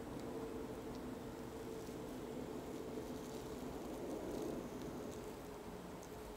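A steady low background hum, with a few faint soft ticks and rustles from hands handling a plastic-and-sphagnum-moss-wrapped air layer on a bonsai branch.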